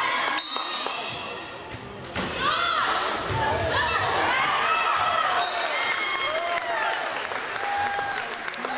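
Volleyball rally in a gym: sharp knocks of the ball being served and hit, then from about two seconds in several voices shouting and cheering over one another, with low thumps a little later.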